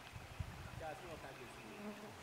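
A flying insect buzzing faintly, wavering in pitch, over quiet outdoor ambience, with a soft low thump shortly after the start.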